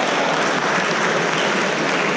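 Spectators applauding: steady, dense clapping.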